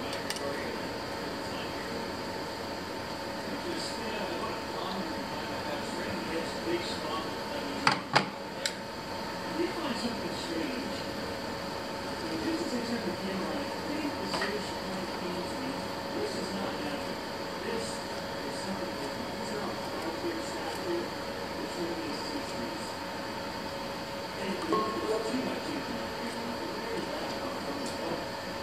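Small kitchen noises as a knife slices hot dog sausage over a glass bowl, under a steady hum and faint background voices. Two sharp clicks about eight seconds in are the loudest sounds.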